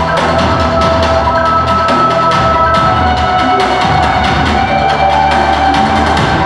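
Music with a steady drum beat under held melodic notes.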